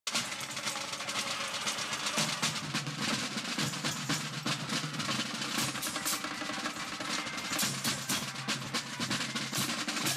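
Marching band drumming: rope-tension field drums playing rapid snare rolls and beats, with low sustained brass notes joining about two seconds in.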